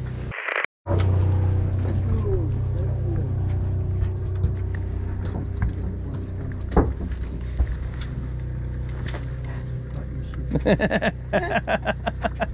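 Fishing charter boat's motor running at idle, a steady low drone, with scattered small knocks and clicks on deck.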